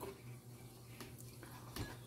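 Faint clicks and scrapes of a knife and fork against a ceramic plate while slicing roasted picanha, over a low steady hum.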